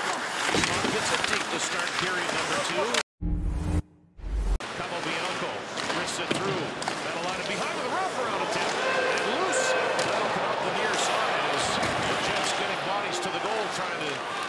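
Ice hockey game sound: arena crowd murmur with sharp clacks of sticks and puck on the ice and boards. The sound cuts out briefly about three seconds in.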